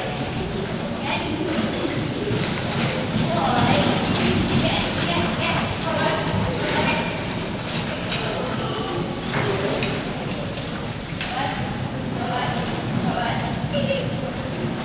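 Hoofbeats of a pair of ponies drawing a carriage over a sand arena surface, with indistinct voices throughout.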